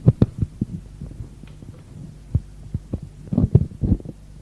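Irregular soft thumps and knocks, a cluster just after the start and another near the end, over the steady mains hum of an old tape recording.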